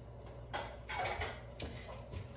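Soft clatter and handling of cookware over a steady low hum, with a brief noisy stretch about half a second in and a small knock near the end.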